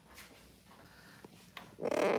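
Pet dog whimpering faintly, with a short louder sound near the end.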